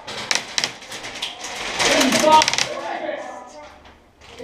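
Rapid strings of paintball marker shots, quick sharp pops in runs through the first two and a half seconds, over shouted voices. Someone is spamming: firing as fast as possible.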